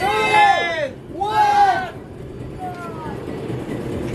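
Children chanting a countdown in chorus, two drawn-out, sing-song numbers in the first two seconds, then a fainter one about three seconds in.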